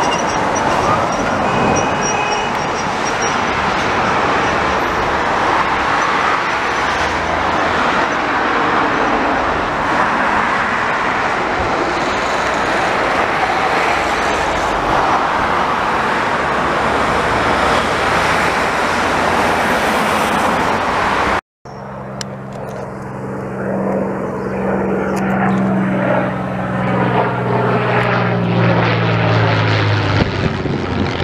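Heavy dual-carriageway traffic noise, with an ambulance siren gliding down and back up at the start. About two-thirds of the way in there is a sudden cut to a Supermarine Spitfire's piston engine, a steady drone that grows louder as the plane passes overhead.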